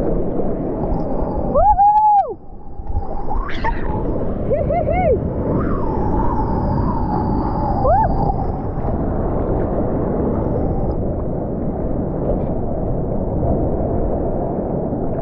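Seawater rushing and splashing around a camera held at the surface of the surf. Several short rising-and-falling tones sound over it about two seconds in and again between about four and eight seconds.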